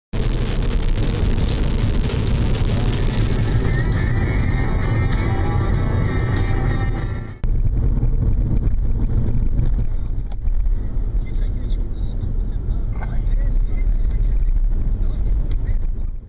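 A vehicle driving on a gravel road, with a steady low rumble of tyres and engine, mixed with music. The sound changes abruptly about seven seconds in.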